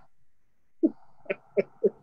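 A man laughing, heard over a video call: a run of short chuckles, about four a second, starting a little under a second in.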